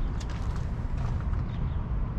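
Wind rumbling on the microphone in the open, with a few faint ticks near the start.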